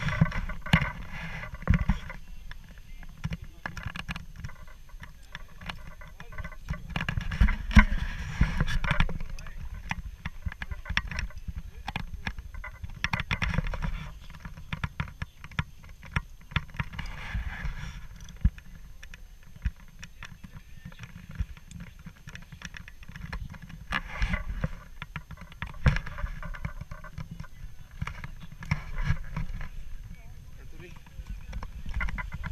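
Wind buffeting an action camera's microphone in gusts, a low uneven rumble with crackling, over faint voices.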